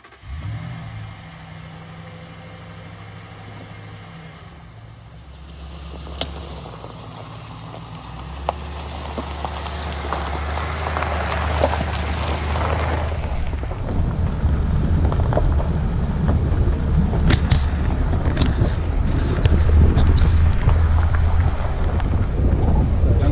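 Truck engine running, heard from inside the cab as a steady low hum. About two-thirds of the way through it gets louder and rougher as the truck drives along a dirt road, with tyre rumble, crunching and a few small knocks.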